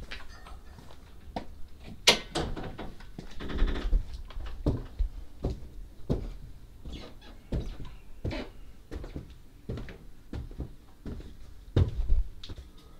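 A door opening with a short creak about two seconds in, then irregular footsteps and knocks going up a stairway, with a sharp thump just before the end.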